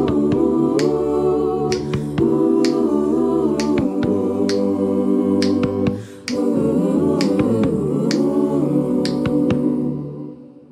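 A cappella choir singing wordless sustained chords, kept in time by finger snaps about twice a second. The singing dips briefly about six seconds in and dies away at the very end.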